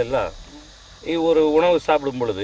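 A person's voice in slow, drawn-out syllables, with a pause in the middle, over a faint steady high-pitched chirring of insects.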